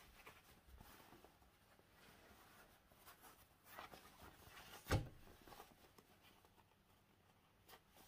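Quiet rustling of a cotton fabric pocket being handled and its corners pushed out by hand, with one sharp knock about five seconds in.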